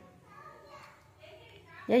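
Speech only: a quiet room with faint voices, then a loud spoken 'yeah' near the end.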